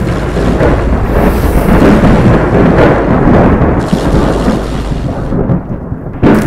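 Thunder-and-lightning sound effect: a loud, dense rumble with crackle, heaviest in the low end, thinning out about five seconds in.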